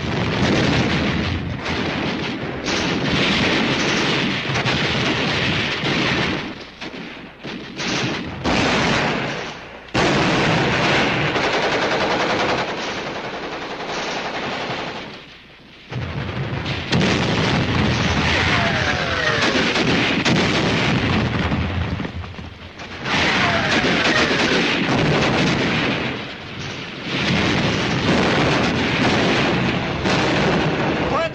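Battle sound effects from a war film: dense machine-gun and rifle fire mixed with explosions, in long loud stretches broken by a few short lulls. A couple of falling whistles come through after the middle.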